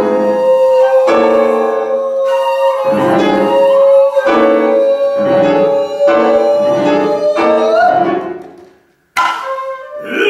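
Shakuhachi holding one long steady note that bends slightly upward near the end and fades out, with further tones sounding beneath it. It is followed by a sudden sharp attack just before the end.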